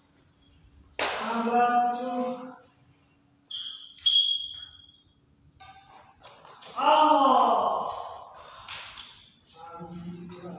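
Badminton players' voices calling out twice during a rally, each call about a second and a half long. A sharp racket hit on the shuttlecock comes just before the first call and another near the end, with brief high sneaker squeaks on the court floor in between.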